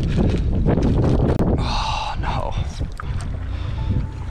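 Wind buffeting the microphone as a heavy, steady low rumble. A brief voice-like cry about halfway through, and a few small clicks.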